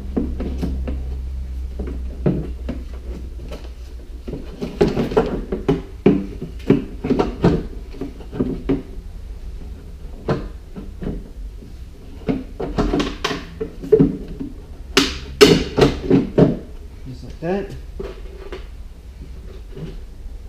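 Irregular knocks and clunks of a plastic coolant reservoir being pushed and worked down into its place in a car's engine bay, over a steady low hum.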